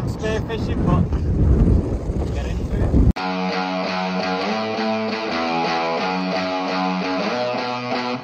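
Strong wind buffeting the microphone for about three seconds, then an abrupt cut to background music of steady, changing notes.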